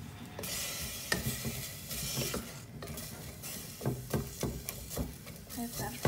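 Sliced shallots, chili and ginger sizzling in a hot, dry stainless steel pot, being browned before any oil goes in. From about four seconds in, a wooden spoon stirs them, with short knocks against the pot.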